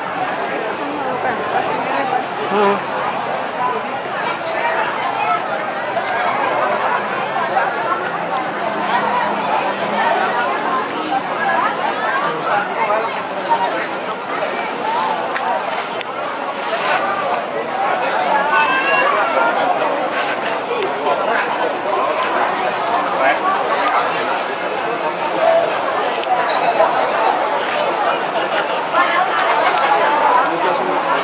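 Crowd chatter: many people talking at once in a steady, loud babble, with no single voice standing out.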